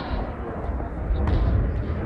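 A low, steady rumble with faint, indistinct voices in a large hall between the shouts of a coach.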